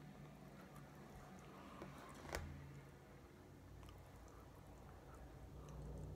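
Near silence with faint sounds of a person chewing a bite of pizza, and one sharp click a little over two seconds in.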